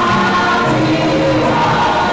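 A group of people singing a church song together, loud and close, starting abruptly at the beginning.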